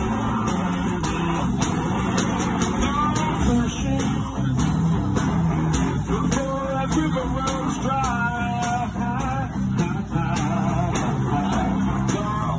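One-man band playing live blues: electric guitar lines over a bass line and a steady drum beat, without singing.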